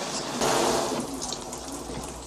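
Heavy rain pouring down, then stopping abruptly about a second in: a rain shower ending on cue as forecast, leaving a faint hiss and a few drips.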